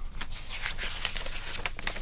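Folded sheets of paper rustling and crinkling as they are handled and unfolded, a steady run of small crackles.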